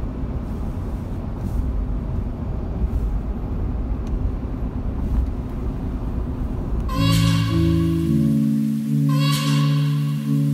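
Steady low road and engine rumble inside a moving car's cabin. About seven seconds in, background music with long held notes comes in over it.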